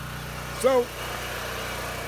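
Portable generator engine running at a steady speed, a constant hum with low fixed tones.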